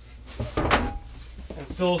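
A tabletop being laid down onto rails to make up a bed: one short sliding knock about half a second in.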